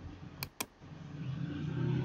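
Two quick computer mouse clicks, then a motor vehicle's engine growing steadily louder from about a second in.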